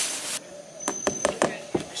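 A brief hiss that cuts off suddenly, then about six light knocks of a knife tapping a durian's spiky husk. It is a ripeness test: a dull knock means that chamber holds fruit flesh.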